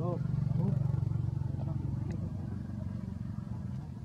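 A motorcycle engine running steadily nearby, loudest about a second in and then easing off, as if passing. A short high-pitched voice sounds right at the start.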